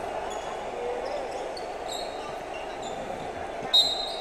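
Quiet basketball arena sound during a stoppage: a steady low background of the hall with a few brief, high sneaker squeaks on the hardwood court, and a louder short high squeak near the end.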